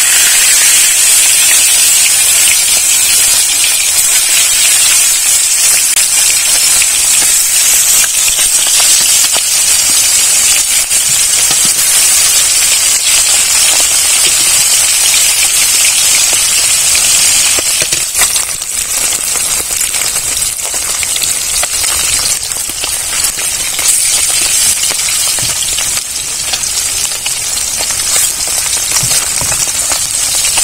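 Pieces of bele (goby) fish frying in hot mustard oil in an aluminium wok: a loud, dense sizzle with fine crackling that eases a little after about 17 seconds.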